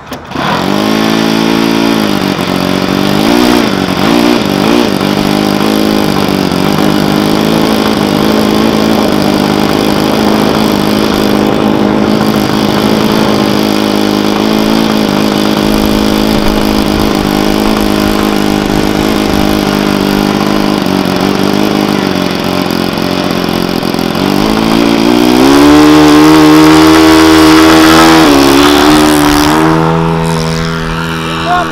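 OS-91 four-stroke glow engine on a giant control-line model plane, swinging a 14-inch propeller, running loudly. Its revs blip up and down a few times in the first seconds, settle to a steady mid-speed run, then rise to a higher, louder pitch for the last few seconds: the throttle opened to launch power.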